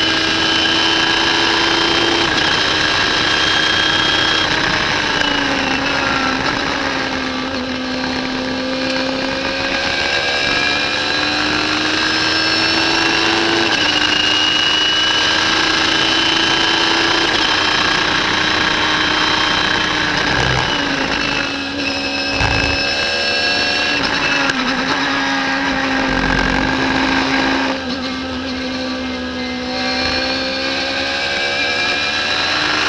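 Radical SR3 race car's motorcycle-derived four-cylinder engine at high revs, heard from the open cockpit with a rush of wind. Its pitch climbs slowly and drops back several times with gear changes.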